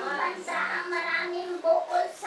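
A high voice singing, holding long steady notes that step up in pitch near the end.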